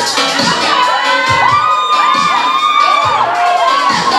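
Audience cheering, shouting and whooping, with many high voices rising and falling over one another. Music continues faintly underneath with a few low beats.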